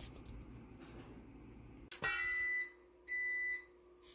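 Faint rustle of hands working crumbly pie dough, then about two seconds in a click and two high electronic beeps, each about half a second long, half a second apart.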